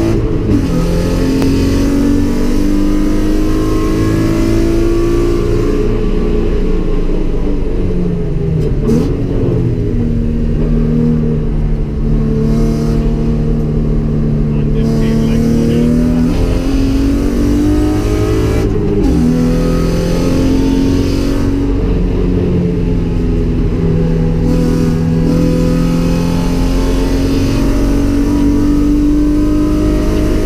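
GM LFX 3.6-litre V6 in a swapped Mazda MX-5, heard from inside the cabin while driven hard on track: loud, its pitch climbing and falling as it is worked through the gears and corners, with two sharp drops about nine and nineteen seconds in.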